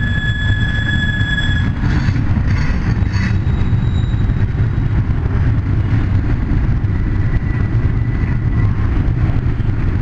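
Double-stack container train's well cars rolling past: a loud, steady rumble of steel wheels on rail. A high steel-wheel squeal is held for the first couple of seconds, with a few clicks just after and a fainter squeal again near the end.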